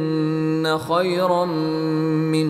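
A male voice chanting Quranic recitation in Arabic, holding long drawn-out notes, with a brief break a little under a second in.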